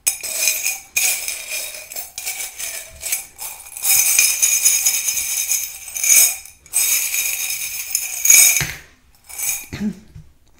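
A handful of small metal charms shaken together, jingling and rattling continuously for about eight and a half seconds with brief pauses, then a short final rattle. They are being shaken to draw one more charm for a reading.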